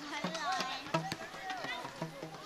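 Children's voices on a school playground: several children talking and calling out at once in short high-pitched bits, with a brief click or knock about a second in.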